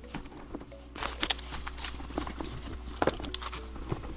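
Small items being put into a Louis Vuitton monogram canvas bucket bag: soft knocks and rustles, in a cluster about a second in and again about three seconds in, over faint background music.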